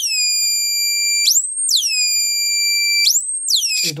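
Electronic siren from an NE556 dual-555 timer circuit on a prototyping board, battery-powered and driving a small loudspeaker. A loud, shrill tone swoops down, holds low for about a second, then sweeps back up, repeating about every two seconds. It is loud enough to saturate the microphone.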